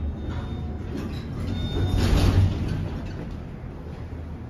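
An AC gearless traction elevator car arriving at its floor and its center-opening doors sliding open, over a steady low rumble. There is a louder rush about two seconds in.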